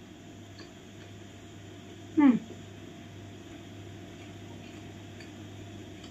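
One short vocal sound falling in pitch about two seconds in, over a steady low hum of room noise.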